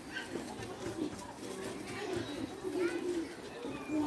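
Low cooing of a pigeon, with faint voices in the background.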